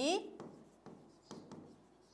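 A few short, faint strokes of writing on a board, one after another, as a word is written out by hand.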